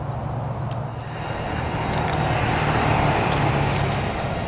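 A road vehicle passing close by: its tyre and engine noise builds from about a second in, peaks near three seconds and then eases off, over a steady low rumble.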